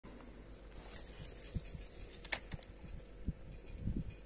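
Faint handling noise: soft, scattered low knocks and rustles, with one sharp click a little past two seconds in.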